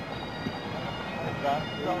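Highland bagpipes of a pipe band sounding, with steady drone tones throughout. A man's voice comes in over them in the second half.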